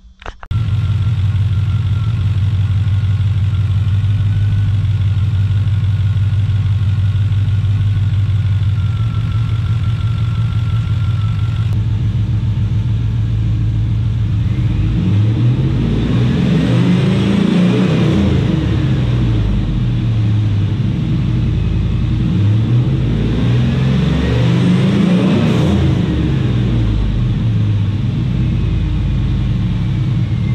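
Chevrolet Silverado pickup's engine idling steadily, then revved twice, each rev rising and falling back over a few seconds. The two-step launch control is switched off, so the engine revs freely in normal operation.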